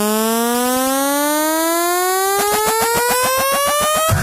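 Electronic dance music build-up: one synthesizer tone sliding steadily upward in pitch, with a fast pulsing coming in about halfway through.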